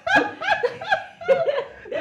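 Women laughing: a run of short bursts of laughter.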